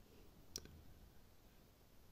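Near silence with room tone, broken by one faint, short click about half a second in.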